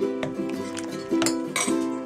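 Background music of plucked notes, with a few light clinks from a spoon stirring stew in a slow cooker's ceramic crock.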